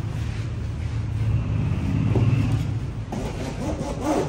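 A steady low rumble that swells slightly about two seconds in.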